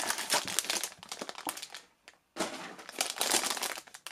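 Foil blind-bag wrapper crinkling as it is handled and pulled open, in two stretches with a brief pause about two seconds in.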